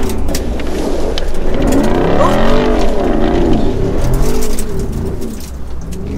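The 6.4-litre HEMI V8 of a 2024 Jeep Wrangler Rubicon 392 revving up and down in repeated rising and falling surges as it is driven hard through loose gravel.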